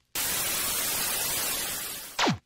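Television static sound effect: a steady hiss of white noise that starts abruptly and fades away near the end.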